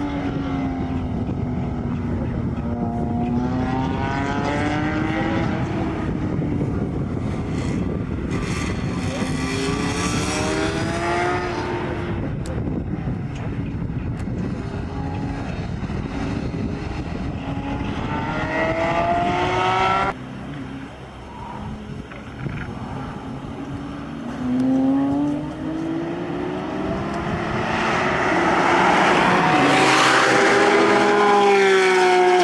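Porsche 997 GT3 flat-six engines at racing speed, the engine note rising and falling as the cars accelerate, shift and brake through the corners. About two-thirds of the way through the sound drops abruptly, then builds again to its loudest as a car closes in near the end.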